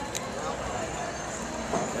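An oyster knife being worked into the hinge of an oyster shell, with a couple of faint sharp clicks right at the start, over steady background hall noise.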